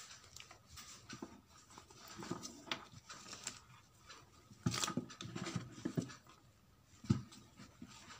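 Hands handling a crocheted nylon-yarn bag and the metal clasp of a small bottle pouch hooked onto it: light rustling and small clicks, with a few louder bumps in the second half.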